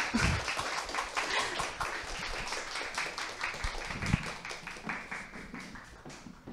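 Audience applauding, many hands clapping at once. The applause slowly dies down, then cuts off suddenly near the end.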